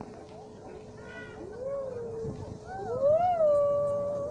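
Narrow-gauge steam locomotive's whistle blowing twice: a short blast that bends up and falls away, then a louder, longer one that slides up in pitch, settles and holds.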